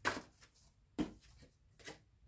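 A deck of tarot cards being handled as a card is drawn: three short, sharp card sounds, at the start, about a second in and near the end.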